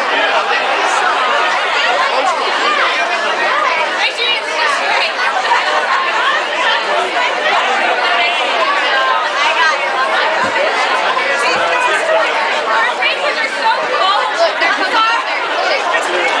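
Crowd chatter: many voices talking over one another, steady throughout.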